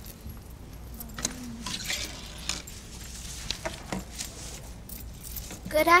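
Light metallic jingling and scattered knocks and footsteps on a stage floor, with a woman starting to speak right at the end.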